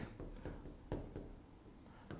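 Faint scratching and a few light taps of a pen writing on an interactive board, the clearest tap about a second in.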